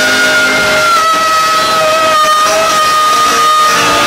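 Live rock band holding one long high note that dips slightly in pitch about a second in, over a full band sound with electric guitar.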